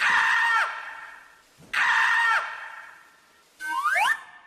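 Comic sound effects from a stage backing track: two identical short blasts, each a cluster of steady tones that drops away at the end, about 1.7 s apart, then a quick rising glide near the end.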